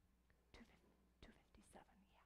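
Near silence in a quiet room, broken by a few faint, brief whispers, over a steady low hum.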